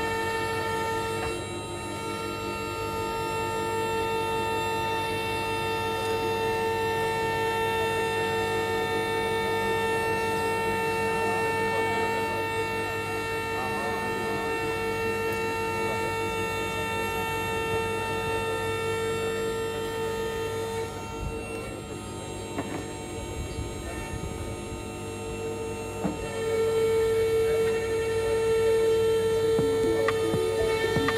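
Electric Malwa forwarder's motor and hydraulic pump whining steadily, a hum of several steady tones, as its crane moves and lowers a grapple load. The whine drops away for a few seconds about two-thirds of the way through, then comes back louder near the end.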